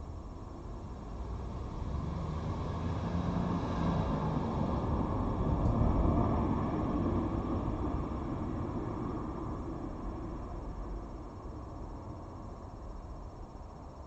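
A vehicle passing by: a low rumble that builds over the first few seconds, is loudest about six seconds in, then fades away.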